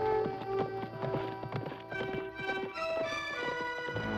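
Background music score of held notes, with horses' hooves clip-clopping on a dirt street.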